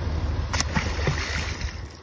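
A released Atlantic salmon hits the harbour water with a brief splash about half a second in, over a steady low rumble.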